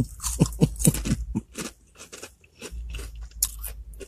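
A person chewing a mouthful of crunchy snack chips close to the microphone: a quick, irregular run of crunches that thins out in the second half.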